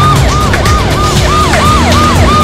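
Police vehicle siren in a fast repeating yelp, about three rises and falls a second, over vehicle engine rumble and background music.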